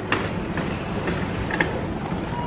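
Metal shopping trolley rolling and rattling as it is pushed along a supermarket floor, with a couple of sharper clicks.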